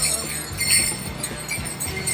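Straight-dance leg bells jingling as the wearer moves, over background music.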